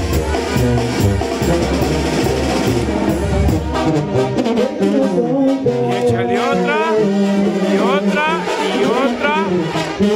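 Loud brass band music playing, in the style of a Mexican banda; its deep bass part stops about four seconds in.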